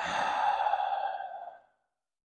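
A man's long, breathy sigh, lasting about a second and a half and fading out.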